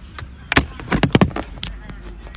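Handling noise from the phone that is recording: a quick cluster of sharp knocks and clicks in the middle as the phone is picked up and moved about, over a low background rumble.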